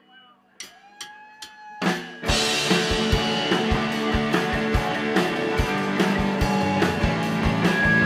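Live rock band starting a song: a few sharp clicks count it in, then about two seconds in the full band comes in loud, with drum kit keeping a steady kick beat under two electric guitars and a bass guitar.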